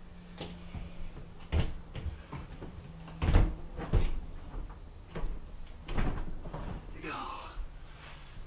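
Knocks and clunks of a dishwasher being handled back into its cabinet opening and its door pushed shut, several separate knocks, the loudest pair about three to four seconds in.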